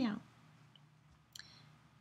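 The end of a drawn-out spoken 'meow' falling in pitch, then a quiet room with one faint click a little over a second in.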